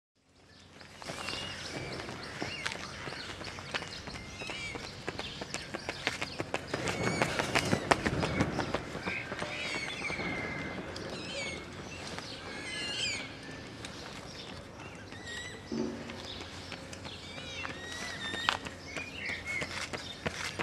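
Outdoor park ambience: small birds chirping and twittering throughout, with scattered footfalls on a gravel path that grow busier near the end as a runner comes close.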